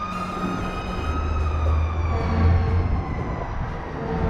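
Emergency vehicle siren wailing, one long tone slowly falling in pitch, with a low rumble coming in underneath about a second in.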